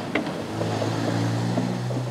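A click, then an old Volkswagen Beetle's engine starts about half a second in and runs with a steady drone.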